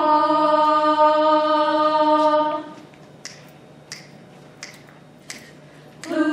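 A pitch pipe sounding one steady starting note for about two and a half seconds, giving an a cappella group its pitch before they sing. Then four finger snaps, evenly spaced about two-thirds of a second apart, counting in the tempo.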